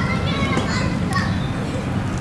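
Children's high-pitched voices calling and shouting at play, mostly in the first second, over a steady low rumble.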